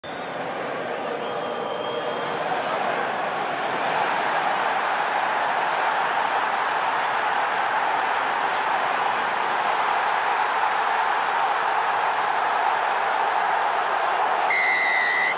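Large stadium crowd noise, swelling over the first few seconds and then holding as a steady roar.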